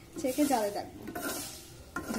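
A slotted steel spatula stirs leaves frying in hot oil in a black pan: sizzling with scraping strokes against the pan, in two bursts, about half a second in and again just past a second.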